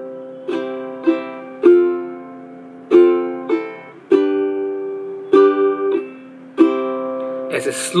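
Makala ukulele strummed slowly in a down, down, up pattern: three strums at a time, the groups about two and a half seconds apart, each chord ringing out between strums.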